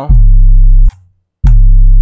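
An 808 bass sample played twice on a sampler, two loud, deep, steady notes each held a little under a second and cut off sharply the moment the key is released. The volume envelope has been turned all the way down except the hold, so the note stops exactly on release instead of ringing on.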